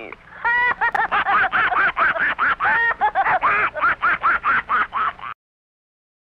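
A cartoon alien's high, sped-up voice calling 'beep-beep' over and over in short syllables, about four a second, like a horn, then cutting off abruptly near the end.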